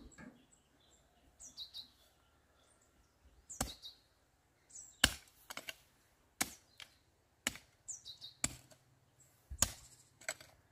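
A hoe chopping into dry garden soil, six strikes starting a few seconds in and coming about one a second.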